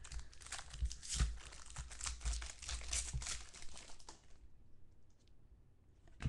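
Thick chromium trading cards being flipped and slid against one another by hand, a quick run of rustling and clicking that dies away about four seconds in.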